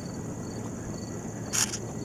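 Steady high-pitched trilling of insects, with a brief puff of noise about one and a half seconds in.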